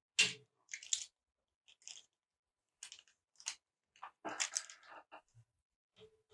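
Short scratchy clicks and rustles of pastel pencils being handled and picked up, about half a dozen brief separate sounds with a longer cluster near the end.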